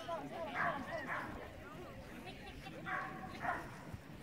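A dog barking in four short barks, in two quick pairs about two seconds apart, while running an agility course.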